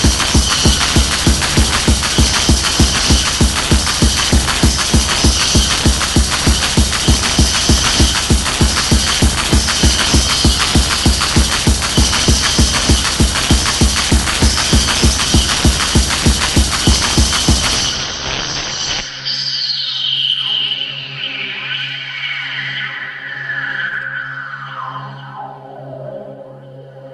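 1990s hardcore gabber techno: a fast pounding kick drum at about three beats a second under a dense synth layer. About 18 seconds in, the kick drops out, leaving a held low synth note and a synth tone sliding steadily down in pitch.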